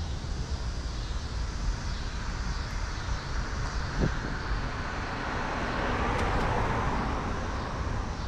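Urban street noise: a steady low rumble, with a vehicle passing that swells louder in the second half and then fades. A single short thump comes about four seconds in.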